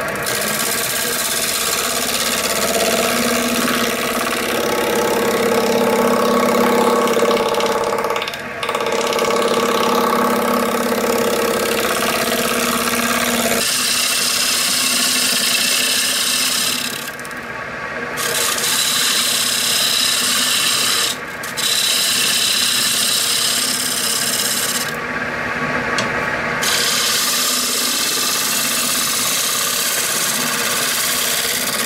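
Shear scraping a cherry platter on a wood lathe: the scraper's edge rasps continuously against the spinning wood, the lathe running underneath. The cut breaks off briefly four times as the tool is eased off the wood.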